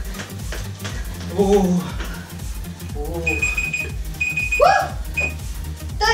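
Electronic workout timer beeping: two longer high beeps and a short third one, over electronic music. The beeps mark the end of the timed workout.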